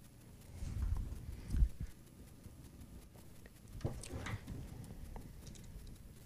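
Handling noise from fitting a hose clip and quick connector onto liquid-cooling tubing: low bumps and knocks through the first two seconds, the loudest about one and a half seconds in, followed by a few small clicks.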